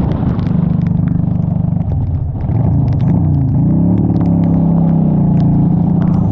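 Honda Shadow 750 Aero's V-twin engine running at road speed on a rain-soaked highway, its pitch dipping and rising again about three seconds in, then holding steady. Wet-road tyre spray hisses under the engine, with scattered sharp ticks.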